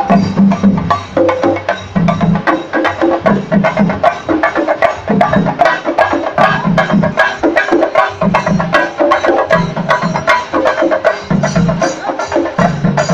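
Singari melam: chenda drums beaten with sticks in fast, dense strokes, with hand cymbals ringing over them. Deeper drum beats come in groups about every second and a half.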